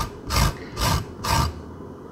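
Peel of a frozen lime being grated: four rasping strokes of the hard rind across a grater, about two a second, stopping shortly before the end.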